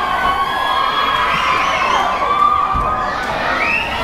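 Concert crowd cheering and screaming, many high voices overlapping in a steady din.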